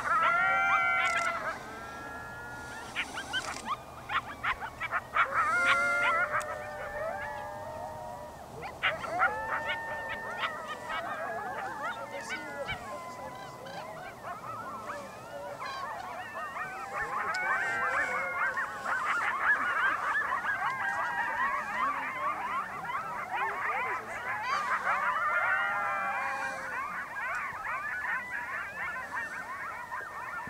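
A small pack of coyotes howling together: many overlapping wavering, rising and falling calls mixed with short yips, building into a dense chorus in the second half.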